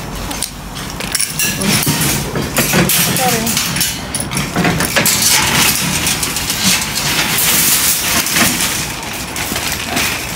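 Metal shopping trolley released from a coin lock and pushed over paving slabs: clanks and clicks of the lock, chain and wire frame, then a steady rattle of the wheels and frame, loudest in the second half.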